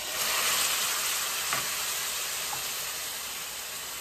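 Marinara sauce hitting hot olive oil and onions in a stainless steel frying pan: a loud sizzle that starts suddenly and slowly dies down. There is a light knock about a second and a half in.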